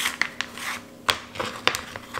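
Slices of toasted bread being pulled apart and laid down on a wooden cutting board: dry rubbing and scraping with a few sharp taps.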